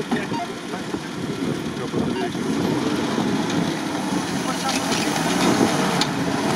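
Off-road vehicle engine running, growing louder toward the end, with indistinct voices under it.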